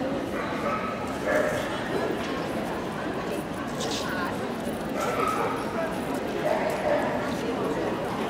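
Steady murmur of crowd chatter in a busy dog-show hall, with dogs yipping and whining at intervals over it.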